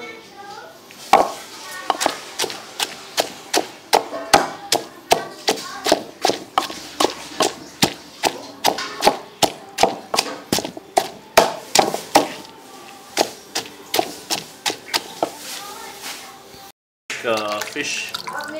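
Wooden pestle pounding a wet paste of green chili, young tamarind and garlic in a mortar, about two strikes a second. Near the end the pounding stops and water splashes as fish are washed by hand in a basin.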